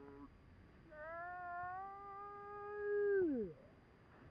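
A person's long, drawn-out yell held on one pitch for about two seconds, then dropping off sharply, after a shorter call at the start.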